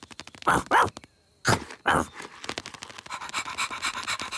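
A cartoon ladybird's dog-like panting as it fetches a boot: a few loud huffs in the first two seconds, then quick, steady panting from about three seconds in.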